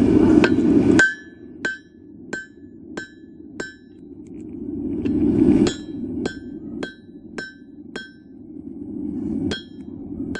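Hammer striking red-hot steel on an anvil, about one and a half blows a second, each with a bright metallic ring. The blows come in runs, with pauses between them. A loud rushing noise swells and cuts off suddenly just before the first and second runs.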